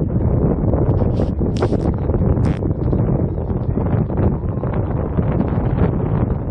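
Strong wind buffeting the microphone with a steady low rumble, broken by a few short hissy gusts a second or two in.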